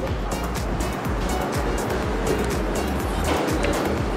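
Background music with a steady beat and heavy bass.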